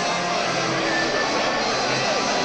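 Steady hubbub of a large football crowd filling the stands.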